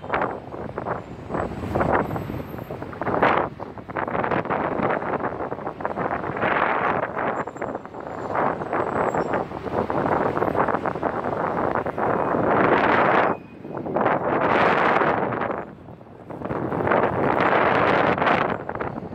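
Wind buffeting the microphone in surges that swell and drop every few seconds, over a steady rush of city street traffic below.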